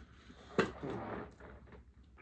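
A single sharp knock about half a second in, followed by about half a second of rustling.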